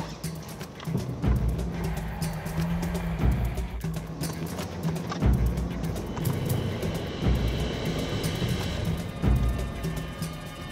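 Background music with low, pulsing bass notes; higher sustained tones join in about halfway through.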